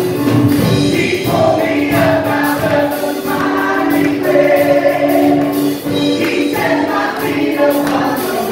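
A live worship song: a woman singing the melody to keyboard accompaniment, with a strummed acoustic guitar.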